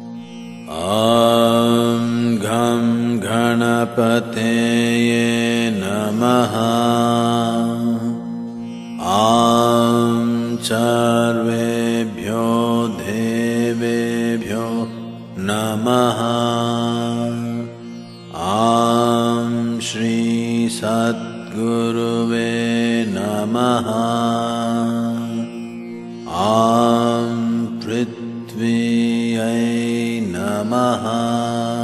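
A male voice chanting Sanskrit mantras of the "Aum ... Namaha" kind in slow, melodic, gliding phrases over a steady drone. A new phrase begins about every eight seconds.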